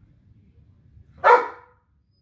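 A Doberman barks once, a single short bark a little over a second in.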